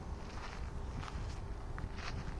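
Sneaker footsteps on sandy, gritty dirt, several short scuffing steps from a person doing walking lunges under a loaded barbell, over a steady low rumble.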